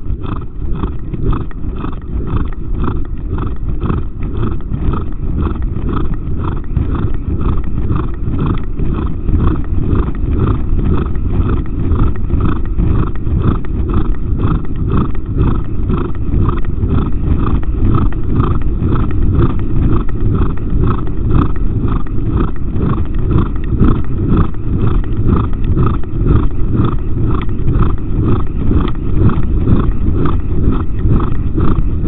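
Exercising horse breathing hard in time with its strides, about two even breaths a second, over a steady low rumble of movement and wind.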